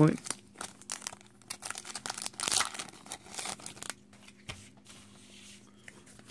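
Foil Pokémon booster pack wrapper being torn open and crinkled by hand: a run of quick crackling crinkles and tearing, loudest about halfway through, fading to quieter handling in the last two seconds.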